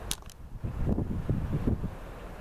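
Wind buffeting the camera microphone in uneven low gusts, with two brief clicks just after the start.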